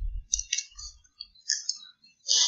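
A few faint, short clicks, irregularly spaced, with a little low rumble at the start.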